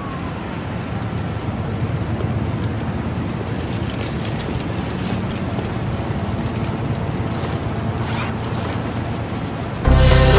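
Noisy intro of a sped-up nightcore track: a steady wash like wind or surf over a low rumble, with a few faint swishes, before the song's music comes in.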